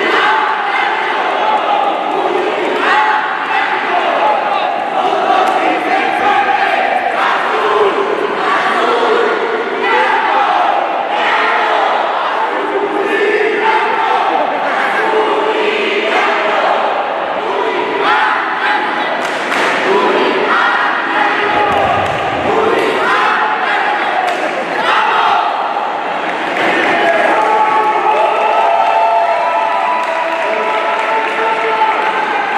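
Cheerleading squad shouting a cheer in unison, many voices chanting together with crowd noise behind, and occasional thuds on the mat.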